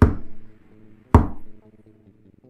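Two heavy knocks on a door, about a second apart, each ringing briefly as it fades, over faint background music.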